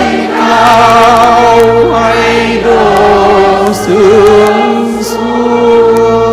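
Congregation singing a Vietnamese Advent hymn together, mostly women's voices, accompanied by a Yamaha Electone electronic organ holding sustained chords.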